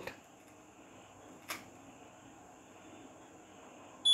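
Quiet room tone with a small DC-motor fan running faintly and steadily, and a single faint click about a second and a half in.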